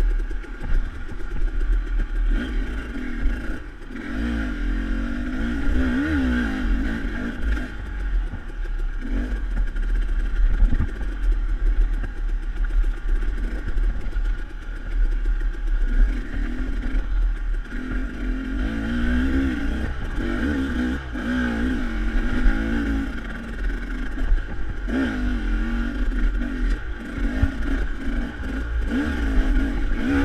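KTM dirt bike engine fitted with a SmartCarb carburettor, revving up and down over and over as the bike climbs rough single track. A low rumble runs underneath, with occasional sharp knocks as the bike bounces over rocks.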